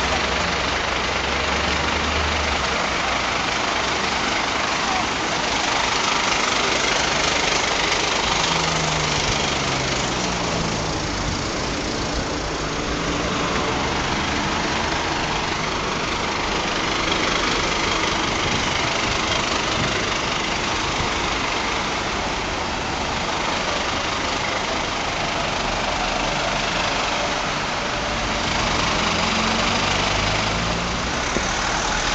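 Fire engines idling in the street, a steady engine rumble, with other vehicles passing; an engine note rises and falls about ten seconds in and again near the end.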